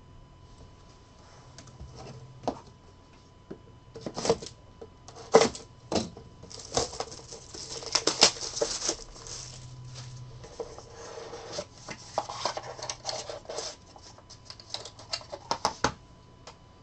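Hands handling a trading-card box and hard plastic card cases: sharp clicks and taps, then a stretch of crinkling plastic shrink-wrap around the middle as the sealed box is unwrapped, and a run of quick clicks and rustles near the end.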